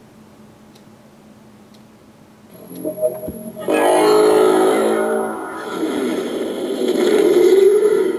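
Hasbro Marvel Legends Infinity Gauntlet replica's built-in speaker playing its electronic activation sound effect, a distorted, music-like swell. It starts about two and a half seconds in, after a faint hum, and holds to the end as the Mind Stone is pressed and held to switch the lights on.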